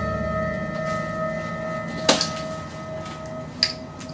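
Suspense background music: one long held tone over a low drone, with a single sharp hit about two seconds in.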